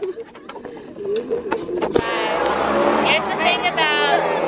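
A car driving past close by on a city street, its engine and tyre noise swelling up about halfway through and staying loud to the end, with voices of passers-by underneath.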